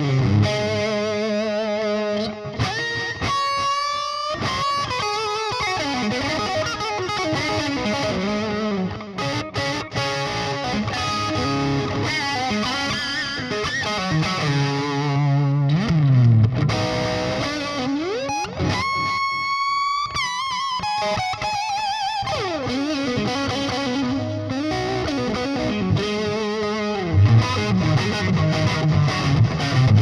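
Distorted electric guitar lead from a Fender Nashville Telecaster with DiMarzio pickups, split to parallel wiring for a more traditional Telecaster tone, played through a high-gain Splawn Quick Rod tube head and 2x12 cabinet. The notes are sustained with wide vibrato, and twice there are high squeals that rise in pitch, a few seconds in and about two-thirds through.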